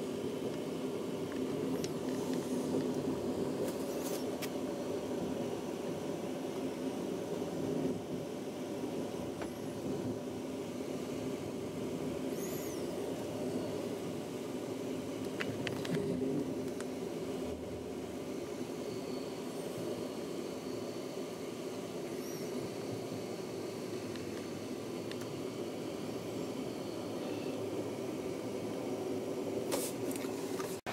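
Steady running noise of a passenger train heard from inside the carriage: the low rumble of wheels on the rails. A few faint, short high squeaks and clicks come through now and then.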